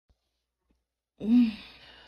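A woman's sigh starting a little over a second in: a short voiced hum that rises and falls in pitch, then trails off into an out-breath.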